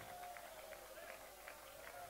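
Faint voices of a worshipping congregation, one drawn-out voice wavering over them, with a few scattered soft clicks.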